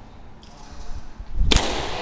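Plastic Blitzball bat striking a plastic Blitzball: one sharp crack about one and a half seconds in, echoing in the large warehouse room.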